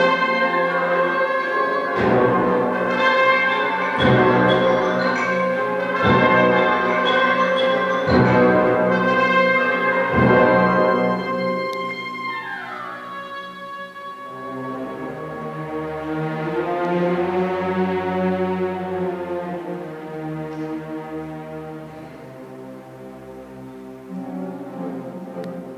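Large symphony orchestra playing loud, full music with brass prominent, hammered out in heavy accents every two seconds. About thirteen seconds in a single falling glide leads into quieter sustained chords that fade toward the end.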